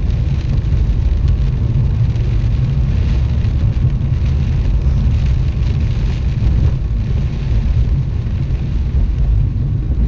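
Steady low rumble inside a Saturn car driving on a wet road in heavy rain: engine and tyre noise, with rain on the windshield.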